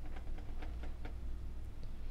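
A quick run of faint light clicks, about seven in the first second, from hands handling solder wire and a soldering iron at the bench, over a steady low hum.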